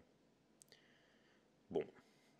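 A single short, sharp click in an otherwise quiet room, then a man's voice briefly near the end.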